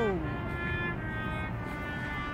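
A street trumpet playing a song, holding one long steady note.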